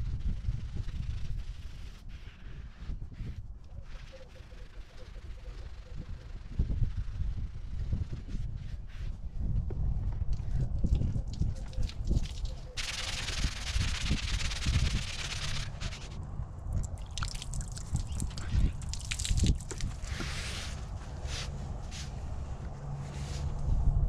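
A wet sponge scrubbing cleanser over a white window box, with small rubbing and handling noises. About thirteen seconds in, water is poured from a plastic pitcher to rinse it: a steady splashing for about three seconds, followed by a few shorter splashes.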